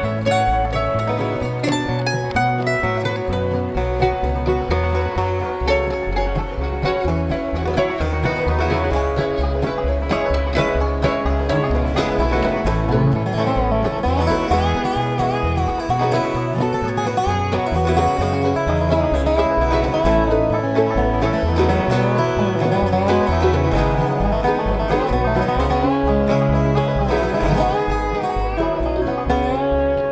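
Live bluegrass band playing an instrumental break without vocals: mandolin, acoustic guitar, banjo and a resonator guitar (dobro) played lap-style with a slide bar, over an upright bass keeping a steady pulse of low notes. Gliding, sliding melody notes come through in the middle of the passage.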